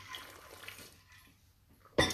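A person takes a quick drink from a stainless steel water bottle: a soft liquid sound of sipping and swallowing in about the first second.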